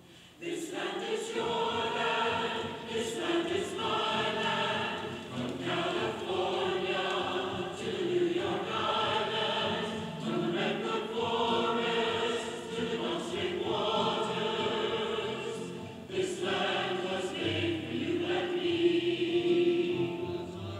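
Large mixed choir singing with orchestral accompaniment, in phrases of a second or two each with short breaks between them. The music starts after a brief pause at the very beginning.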